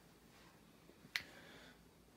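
Near silence with a single sharp click a little over a second in, amid faint handling rustle.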